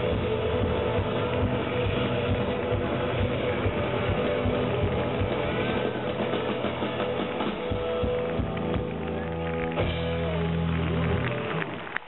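Live rock band playing: drum kit, electric guitar, electric bass and keyboards together at full volume, with steady held low notes in the last few seconds. The sound drops away near the end.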